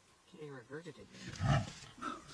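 A large wild animal calling: a short run of quick rising-and-falling calls, then one louder, deeper call about a second and a half in.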